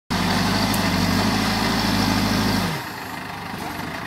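Backhoe loader's diesel engine working hard and steady at high revs while the front bucket pushes into a soil pile. About two-thirds of the way through, the revs fall away and it settles to a lower, quieter note.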